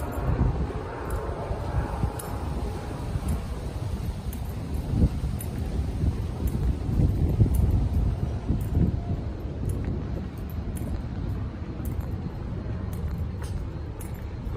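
Low, uneven rumble of city street noise: distant traffic mixed with wind buffeting the microphone.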